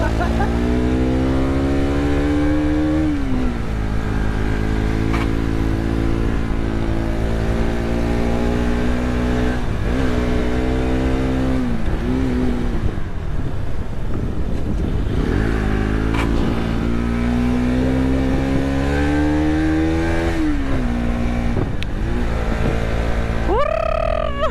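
Motorcycle engine heard from the bike while riding: its pitch climbs steadily as it accelerates, then falls back, several times over, with a quick sharp rev near the end. Rushing noise from the ride runs under it.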